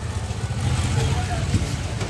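Low engine rumble of a motorcycle passing close alongside in street traffic, swelling slightly midway.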